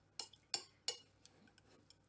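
Metal spoon clinking against a glass mixing bowl while stirring a chunky corned beef hash mixture: three sharp clinks in the first second, then only faint ticks.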